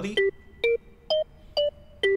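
Auxy app's 'Leaf' melodic-percussion synth playing a short melody in G minor: four short, quickly decaying notes, about two a second.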